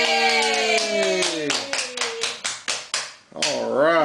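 A voice holds one long cheer that falls in pitch, then hand clapping at about five claps a second, celebrating the birthday candles being blown out. A voice starts speaking just before the end.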